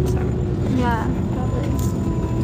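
Steady low rumble of a passenger train running, heard from inside the carriage, with a thin steady whine coming in about a second in.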